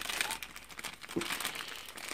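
Clear plastic bag crinkling as it is handled, a quick, irregular run of small crackles.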